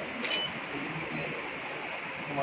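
Room noise with a faint murmur of low voices, and one short click with a brief high beep about a quarter second in.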